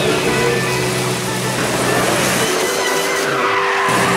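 A BMW drift car sliding, its engine revving and its tyres squealing, mixed with background music.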